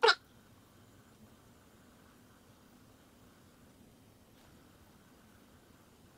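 A brief vocal sound right at the start, then near silence: faint room tone.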